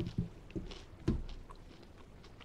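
A person chewing a bite of a breaded nugget close to the microphone: a few soft, irregular clicks and mouth sounds.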